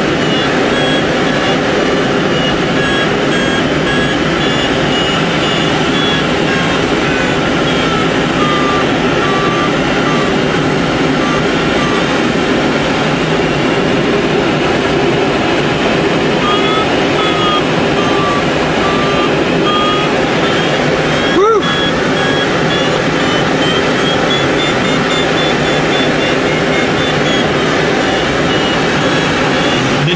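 Steady rush of air in a glider's cockpit in flight, with an audio variometer beeping in a dashed pattern whose pitch drifts slowly down and back up. A short click about twenty-one seconds in.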